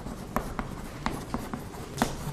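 Chalk writing on a chalkboard: a handful of short, sharp chalk taps and strokes as symbols are written.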